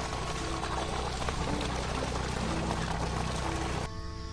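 Water gushing steadily out of a clear plastic irrigation pipe, with music faint underneath; the water sound cuts off just before the end.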